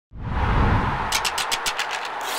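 Logo-sting sound effect: a deep rumbling whoosh swells in, and about halfway through a quick run of about seven sharp ticks follows, like split-flap letters flipping into place.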